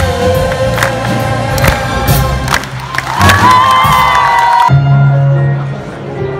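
Live band playing loudly with drum kit and brass, the drums striking about once a second. About three seconds in, a long wavering high note is held. The sound then changes abruptly to a quieter, duller band passage.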